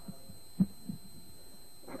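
A few dull, low thumps about a third to half a second apart, the one about halfway through the loudest, over a steady faint hum: handling knocks on the recording equipment.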